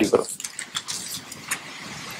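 A man's spoken phrase ends, then a pause filled with steady background hiss and a few faint clicks.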